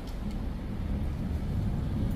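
Low, steady rumble of background noise in a concrete parking garage, like distant traffic or ventilation, with no clear single event.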